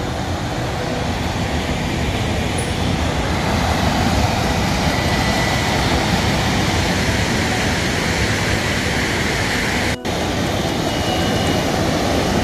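Ocean surf breaking and washing up on a sandy beach: a steady rush of waves that swells a little midway, with a brief dropout about ten seconds in.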